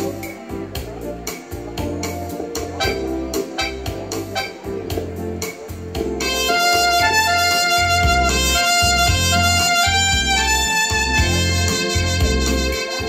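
Electronic keyboard playing an instrumental intro over a steady drum beat and bass line. About six seconds in, a louder lead melody of held notes comes in.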